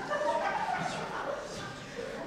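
Several people's voices calling out and chattering in a hall, growing quieter toward the end.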